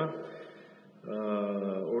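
A man's voice trails off into a short pause, then about a second in holds one long vowel at a level pitch: a drawn-out hesitation filler before his speech goes on.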